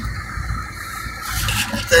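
Steady road and wind noise inside the cabin of a 2011 Toyota Prius cruising at about 105 km/h (65 mph): a low rumble with a hiss above it.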